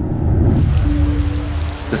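Steady rain starting about half a second in, over a low rumble and a single held musical note.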